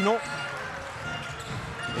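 Basketball game sound in an indoor arena: crowd murmur with a basketball being dribbled on the hardwood court.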